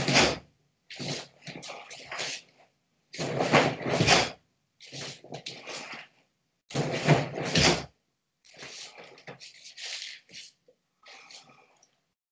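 A karateka's forceful breathing and gi rustle as he works through kata moves: three loud, breathy bursts about a second long, roughly every three and a half seconds, with quieter breath and rustling between.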